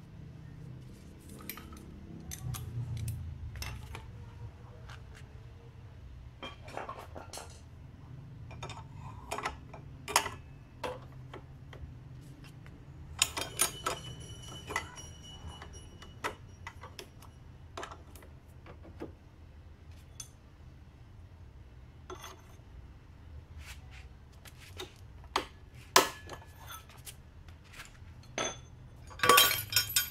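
Metal tools and CVT parts of a Honda Vario 110 clinking and knocking as the rear clutch and driven pulley are worked loose with a holder bar and wrench: scattered clicks and clanks, with a metal part ringing briefly about 13 seconds in and a cluster of louder knocks near the end.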